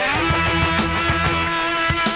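Heavy metal band recording: distorted electric guitars, bass and drums playing, with a held high note that slides up at the start and is sustained over steady drum hits.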